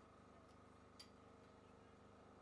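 Near silence: a faint steady background hum, with one short faint click about halfway through.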